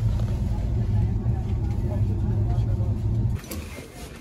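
Steady low rumble of a train carriage in motion, heard from inside. It cuts off abruptly about three seconds in, leaving quieter cabin background with faint voices.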